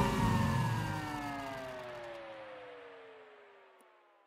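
The end of an electronic dance track fading out: a synth tone with its overtones glides slowly downward in pitch as the music dies away, falling silent just before the end.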